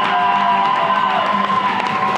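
A man singing a long, high held note over acoustic guitar; the note slides down about a second in and another held note follows.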